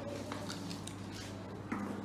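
Low classroom room sound: light clicks and rustles of paper and children's scissors being handled at a table, with a faint child's voice in the background.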